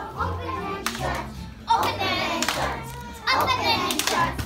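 A group of young children singing along to a recorded backing track with a steady bass line, clapping their hands in time. Their voices come in loudly about two seconds in and again near the end.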